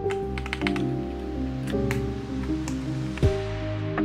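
Background music, with a scatter of sharp plastic clicks as keycaps are pulled off a mechanical keyboard by hand.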